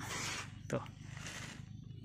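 A single short spoken word in a pause, over a faint hiss of background noise.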